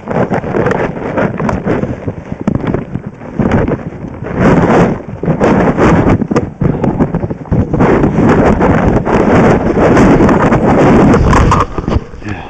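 Wind rumbling and buffeting on a body-worn camera's microphone, in loud swells, with scattered knocks and scrapes from skis and poles on hard snow.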